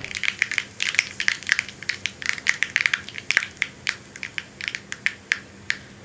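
Mustard seeds spluttering in hot oil in a small tempering pan: a rapid run of sharp pops and crackles, several a second, throughout.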